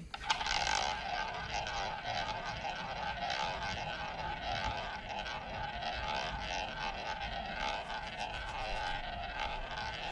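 Roulette ball launched by hand and rolling around the wooden ball track of a spinning tabletop roulette wheel, a steady rolling whir.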